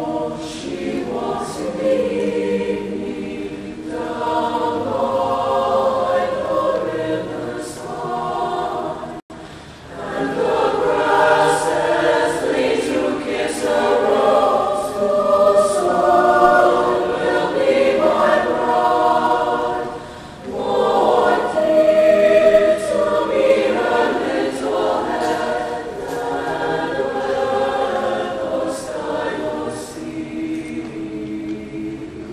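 A large mixed choir of male and female voices singing together in parts, with brief breaks about nine seconds in and again around twenty seconds.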